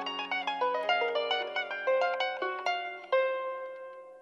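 Solo harp playing a quick run of plucked notes over a held bass note. A little past three seconds in, a fresh note is plucked and left to ring, fading away.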